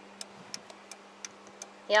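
A 1999 Dodge Ram 2500's new electronic turn signal flasher relay ticking lightly, a few ticks a second, as the blinkers flash: the sign that the replacement relay has cured the dead turn signals and hazards.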